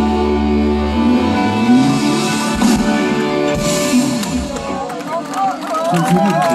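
Live band music: sustained chords over a bass line, the low end dropping away about five seconds in as a man's voice starts speaking.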